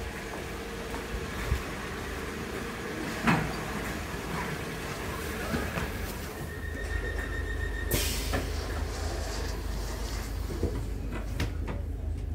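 Class 508 electric multiple unit standing at a platform, then heard from inside the carriage with a low steady hum. A steady warning tone sounds for about a second, then the sliding doors shut with a sudden thud about two-thirds of the way in.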